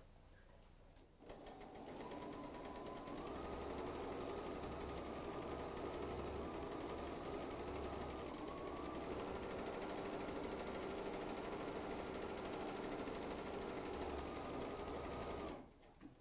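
Bernina sewing machine stitching a tapered decorative appliqué stitch: it starts about a second in, runs steadily at a rapid needle rate, and stops by itself shortly before the end as the tapering program reaches its set stitch length.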